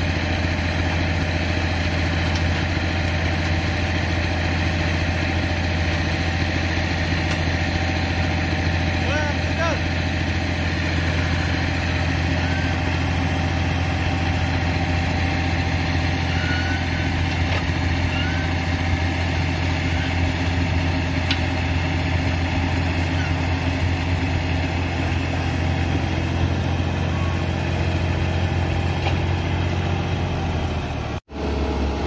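Farm tractor diesel engine running steadily at a constant speed while it drives the hydraulic tipper lifting the loaded trolley bed to dump earth.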